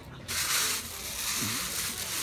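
Expanded clay pebbles (hydroton) shifting and grating under hands as they are pushed in around an onion's stem, a steady gritty rustle that starts about a quarter second in.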